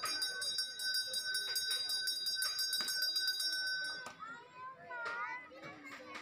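A metal puja bell rung rapidly and continuously, a bright, steady ringing that stops suddenly about four seconds in, then crowd voices.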